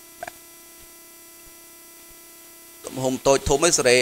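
Steady electrical hum from the recording setup, a stack of even, unchanging tones, heard plainly in a pause in the talk, with one soft click just after the start. A man's voice starts again near the end and is louder than the hum.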